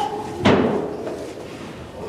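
A single loud bang about half a second in, with a short ringing tail.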